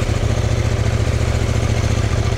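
CFMOTO 800NK's 799 cc parallel-twin engine running at steady low revs, with no revving.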